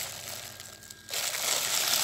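Red plastic bag crinkling as granular chemical fertilizer is tipped out of it into a bucket of water. The rustle dies down about halfway through, then picks up again.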